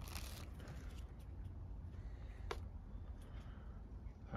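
Quiet background with faint handling noise, and a single sharp click about two and a half seconds in.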